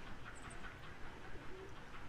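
Faint outdoor background with a steady low rumble and a brief, low bird call about one and a half seconds in.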